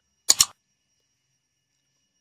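Mouse-click sound effect of a like-and-subscribe button animation: one quick double click about a third of a second in.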